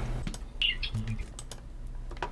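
A few faint, irregular clicks and taps over a low steady hum.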